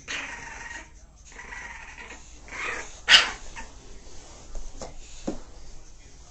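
Bulldog growling in short bouts, with one sharp bark about three seconds in.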